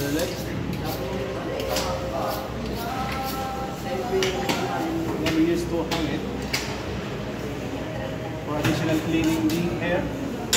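People talking, with a butcher's knife working a pork cut on the counter and sharp knocks of the blade against the board now and then.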